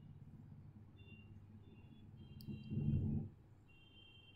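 Quiet room tone with a low steady hum, a single computer mouse click about two and a half seconds in, and a short low murmur of a voice just after it.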